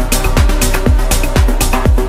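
Melodic techno track playing: a steady four-on-the-floor kick drum about twice a second, hi-hats between the kicks, and sustained synth chords.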